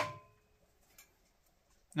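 A sharp metallic clink with a short ring as a metal go-kart hub is pushed onto the engine's crankshaft, followed by one faint tick about a second later.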